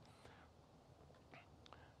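Near silence: the room tone of a lecture-hall microphone in a pause between sentences, with a couple of faint ticks about a second and a half in.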